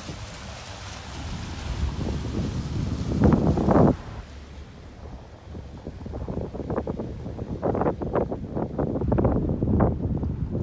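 Wind gusting against the microphone on the deck of a power catamaran under way, in irregular buffeting swells that are loudest near the end. For the first few seconds the hiss of the boat's wake runs under it.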